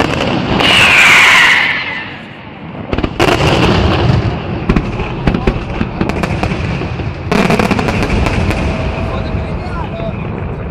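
Aerial fireworks display: a loud hiss in the first two seconds, then from about three seconds in rapid volleys of sharp bangs from bursting shells, with another dense flurry of reports about seven seconds in.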